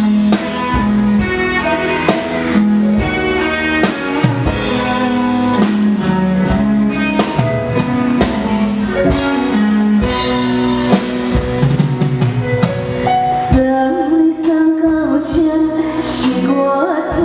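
Live band of drum kit, guitar and keyboard playing an instrumental passage of a slow pop ballad over a steady drum beat. A woman's sung vocal comes in near the end.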